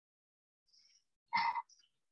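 Near silence, then about a second and a half in a brief throat noise from a man's voice, lasting about a third of a second.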